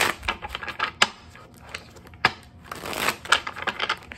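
A deck of tarot cards being shuffled by hand, riffled and bridged, in rapid flurries of card-edge clicks: one at the start and another near the end, with a few single sharp clicks between.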